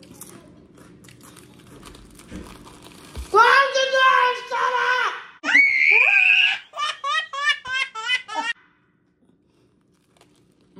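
Faint crunching and chewing of a crusty sandwich, then a baby laughing loudly: high squealing followed by a quick run of giggles that cuts off suddenly about a second and a half before the end.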